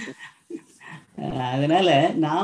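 A man's voice, after a near-quiet first second, making a long drawn-out vocal sound whose pitch wavers slowly up and down.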